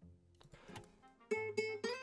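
A short guitar riff played back from the beat project: a quick run of picked notes begins a little over a second in, after a quiet opening. It carries flanger and reverb.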